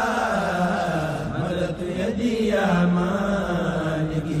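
Men's voices chanting an Arabic xassida, a Mouride devotional poem, in long held melodic lines.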